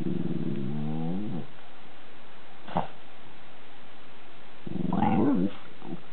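Italian greyhound grumbling a whiny, cat-like "unya-unya" complaint, a territorial protest aimed at a rival dog outside. It comes as two drawn-out wavering grumbles, one at the start and a louder one near the end, with a brief sharp sound between them.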